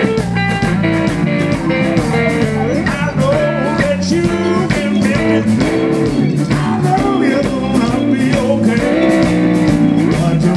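Live blues band playing, with electric guitar lead lines bending in pitch over bass and drums.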